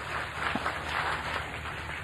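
An audience clapping and laughing: a steady, even patter of many hands.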